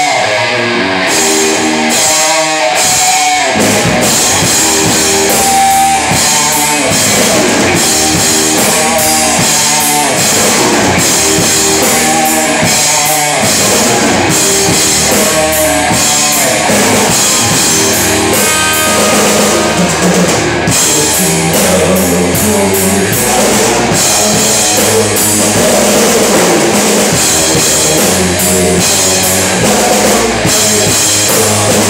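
Rock band playing live in a room: an electric guitar riff with short stops for the first few seconds, then the drum kit and bass guitar come in about four seconds in and the full band plays on steadily.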